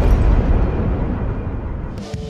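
Deep rumbling boom from a produced intro sound effect, slowly fading as its high end dies away.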